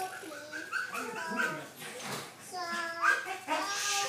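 A toddler girl's high voice making short wordless sung notes, several held tones with a brief lull about halfway through.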